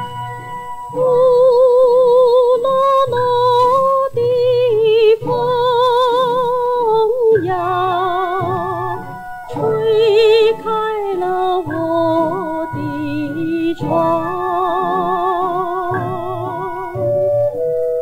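A 1950s Mandarin popular song recording with a female voice singing long phrases with a wide vibrato over a small orchestra with a steady low beat. The voice comes in about a second in.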